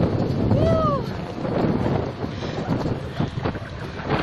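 Wind buffeting a phone's microphone while cycling, a heavy rumbling roar that eases toward the end. About half a second in, a short pitched sound rises and falls once.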